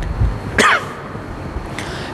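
A man briefly clearing his throat, one short sound about half a second in, between low dull thumps and steady room noise.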